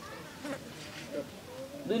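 Faint insect buzzing over a quiet outdoor background, with a few weak short sounds.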